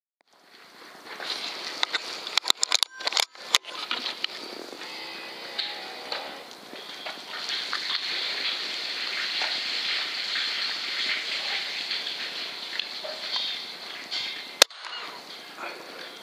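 Steady hiss from the rifle scope's built-in recorder, with a run of small clicks and knocks in the first few seconds. About a second before the end comes one sharp crack, a rifle shot at a rat.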